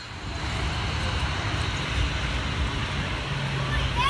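Steady jet engine noise from a large airliner rolling out just after touchdown, mixed with road traffic.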